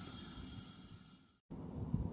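Faint outdoor background noise, a low rumble with a light hiss, fading out over about a second and a half. It drops to dead silence for a moment, then a quieter low rumble resumes.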